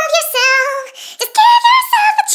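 High-pitched, sped-up 'chipmunk' singing voice singing a line of a song in two short phrases, with a brief break about a second in.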